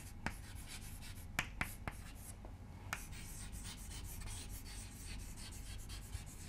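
Chalk writing on a blackboard: faint scratching strokes broken by a few sharp taps as the chalk strikes the board.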